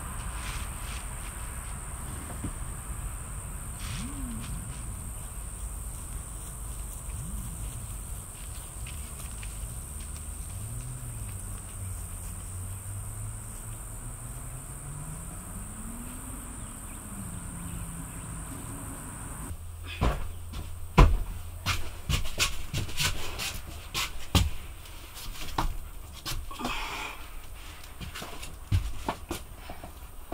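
Outdoor ambience with a steady high-pitched insect drone over a low rumble. About two-thirds through it cuts to a run of sharp wooden knocks and clatter as a timber benchtop is handled and set into place in the cabinetry.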